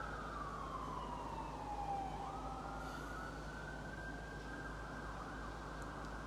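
A single high, siren-like tone that slides down over about two seconds, glides back up and then holds steady, over a constant low hum.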